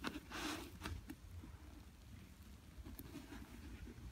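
Faint rustling and light knocks of an Air Jordan 11 sneaker being handled and turned by hand: a brief scrape about half a second in, then a few soft taps.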